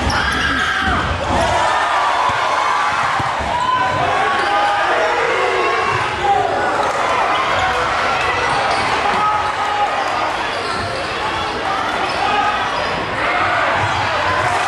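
Live basketball play in a large gym: a ball dribbled on the hardwood floor, short sneaker squeaks, and the crowd's voices underneath.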